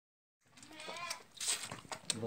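A young lamb bleats once, starting about half a second in, followed by a few short clicks and scuffs.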